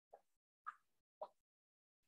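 Three faint, short taps or knocks, about half a second apart, each slightly different in pitch, in near silence.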